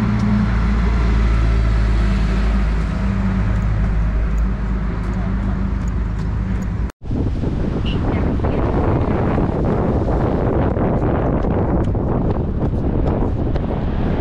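A car engine idling close by, a steady low hum that fades. After a sudden cut about halfway through comes strong wind buffeting the microphone, with a cloth flag flapping and snapping.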